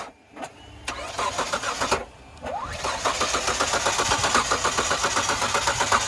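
Old Mitsubishi's engine, jump-started with its cylinders fouled by diesel: it cranks on the starter, pauses, then cranks again about two and a half seconds in and catches, running with a fast, even beat.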